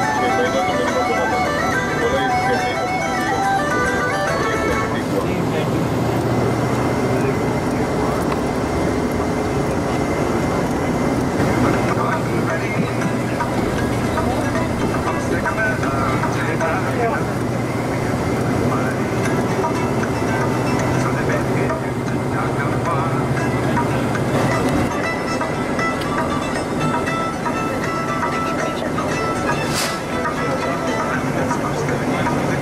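Tour coach engine and road noise heard from inside the moving bus, a steady low hum. Music with held tones plays over it in the first few seconds.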